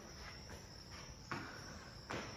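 A steady high-pitched insect drone, like crickets, with one footstep on stone stairs a little past the middle.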